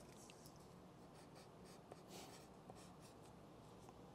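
Faint scratching of a pen writing on a paper sheet on a clipboard, in a few short strokes.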